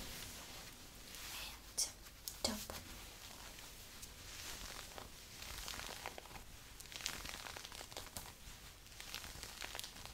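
Long acrylic fingernails scratching and rubbing the fabric of a floral crop top: a dry, crinkly scratching that goes on in short strokes, with two sharp clicks about two seconds in.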